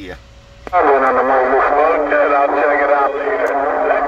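Cobra 148 GTL CB radio receiving. A click about three-quarters of a second in, then a strong incoming station comes through the speaker: a narrow, radio-sounding voice with a steady low tone running under it.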